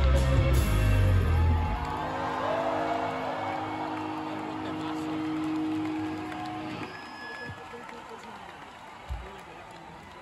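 A live rock band finishing a song: the full band with bass and drums stops about two seconds in, and a held electric guitar note rings on until about seven seconds in. Crowd cheering and whooping runs under it and carries on, quieter, after the note stops.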